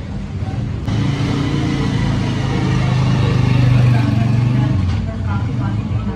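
A motor vehicle engine running close by: a steady low hum that starts about a second in, swells, and fades out shortly before the end, with voices around it.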